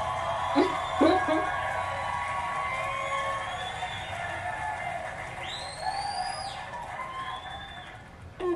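Sound from the stand-up comedy clip being played back: sustained, music-like held tones, with a high sound that rises, holds and falls a little past the middle.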